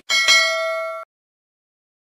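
Notification-bell sound effect: a bright ding, struck twice in quick succession, ringing with several overtones for about a second before cutting off suddenly.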